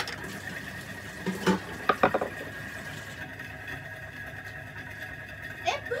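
A metal spatula clinking and scraping against a metal baking tin, a few short ringing knocks about a second and a half and two seconds in, then quiet handling.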